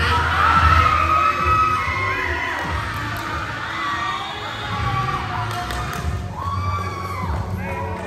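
Volleyball players shouting and cheering together as a rally ends and a point is won, with background music playing underneath.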